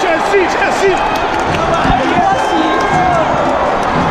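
Stadium crowd of football fans shouting and cheering, many voices overlapping in a dense, steady din, with one man close by yelling "sí, sí, sí" about a second in.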